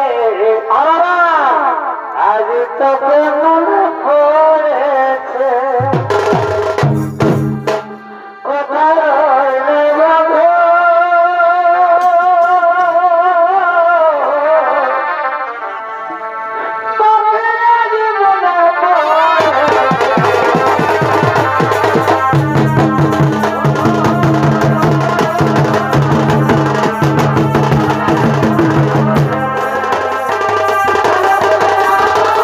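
Chhau dance band: a wind instrument plays a wavering, ornamented melody, joined briefly by a few low drum strokes about six seconds in. From about two-thirds of the way through, the big dhamsa kettle drum and the dhol come in with a steady, fast beat under the melody.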